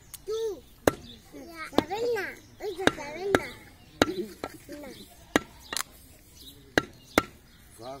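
Cleaver chopping goat meat on a wooden log chopping block: about nine sharp chops at irregular intervals.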